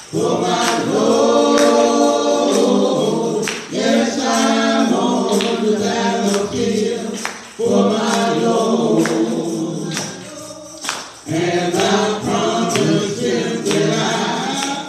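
Gospel hymn sung by a man leading at a microphone with voices joining in, lines broken by short breaths. Sharp percussive hits keep the beat.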